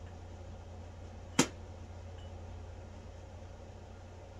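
A single sharp click about a second and a half in, over a steady low hum.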